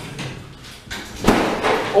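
Elevator car doors sliding shut, ending in a sharp thud about a second and a quarter in, followed by the rush of noise from the car.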